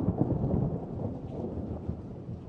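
Thunder rumbling with rain: a low, crackling rumble that eases slightly toward the end.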